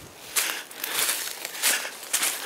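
Footsteps crunching through dry fallen leaves and twigs on the forest floor, a few irregular crunches.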